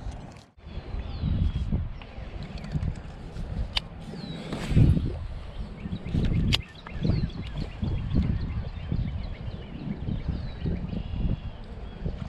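Gusting wind buffeting a GoPro action camera's microphone, with a couple of sharp clicks and faint high bird chirps now and then.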